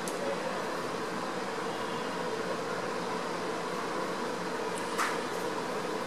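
Steady fan-like background hum, with a single short click about five seconds in, likely the keyboard's Enter key.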